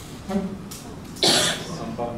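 A single cough about a second in, short and breathy, after a brief faint murmur of voice.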